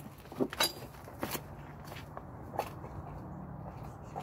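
A few footsteps and light knocks, spaced out over the first three seconds, over a faint low steady hum.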